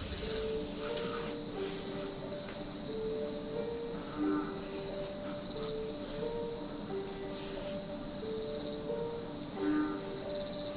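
Crickets chirping steadily, with a slow, soft melody of held single notes playing over them.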